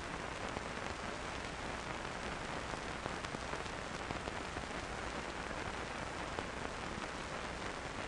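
Steady, fine crackling hiss with a faint low hum underneath and no distinct events: the background noise of an old film soundtrack.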